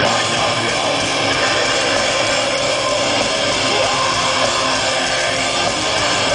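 Metalcore band playing live through a festival PA, heard from the crowd. Distorted electric guitars and drums make a dense, steady wall of sound, with the singer's vocals over it.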